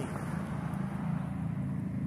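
Road traffic: a steady low engine rumble from vehicles on the street.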